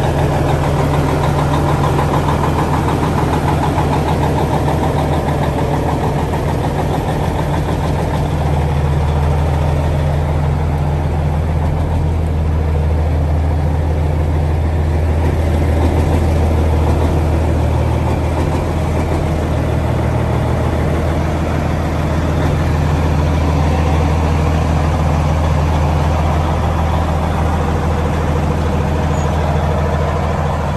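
Peterbilt semi truck's diesel engine idling steadily.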